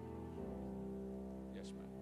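Church keyboard playing soft held chords. It moves to a new chord about half a second in, and the chord slowly fades.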